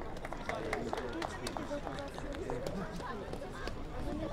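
Several people's voices talking and calling out at once on a sports field, with scattered sharp claps throughout.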